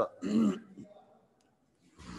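A man briefly clearing his throat, a short sound near the start, followed by quiet room.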